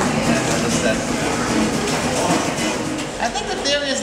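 Acoustic guitar playing in a tiled corridor, over a bed of noise and voices. A man's voice starts talking near the end.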